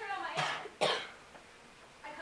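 Two short coughs from a person, about half a second apart, then quiet.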